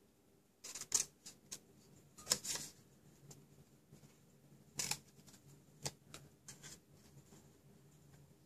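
Small scissors snipping through cardstock in short, irregular snips, a handful spread across the few seconds, as small notches and scraps are trimmed off a box blank.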